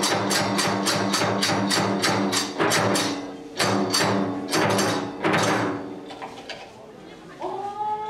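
Kagura music: even, rapid strikes of a taiko drum and small hand cymbals, about four to five a second, that break off about three seconds in, resume briefly and die away about six seconds in. Near the end a long, held chanted note begins, sliding up into pitch.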